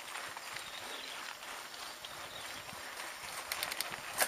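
Mountain bike rolling over a loose dirt trail: a steady rustle of tyre and riding noise with scattered rattles and clicks from the bike, and a quick cluster of sharp clicks near the end.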